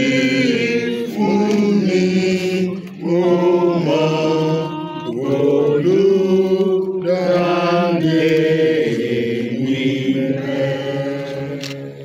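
A group of voices singing a hymn together, holding long notes that rise and fall; the singing fades near the end.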